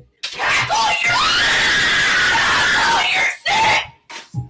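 A woman's long, high-pitched scream lasting about three seconds, followed by a second, shorter scream near the end.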